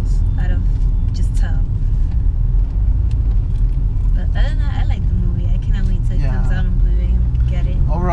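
Steady low rumble of a car's engine and tyres heard inside the cabin while it is driven, with brief snatches of talk.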